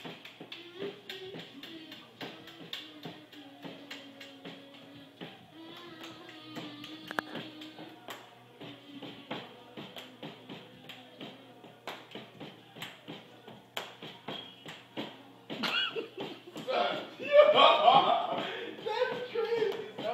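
A small child tapping a quick, steady beat on a wooden coffee table with his hands and a plastic toy, a low held tune sounding underneath. Voices come in loudly over the taps near the end.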